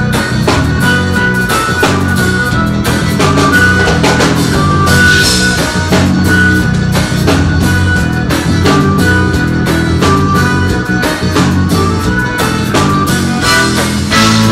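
Live band music at full volume: an accordion playing held and moving melody notes over a drum kit keeping a steady beat.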